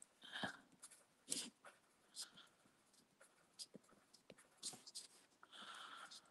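Faint, sparse scratching of a coloured pencil on watercolour paper: short strokes roughly a second apart, against near silence.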